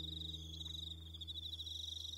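Crickets chirping in a steady, rapid high trill, over low acoustic guitar notes left ringing out.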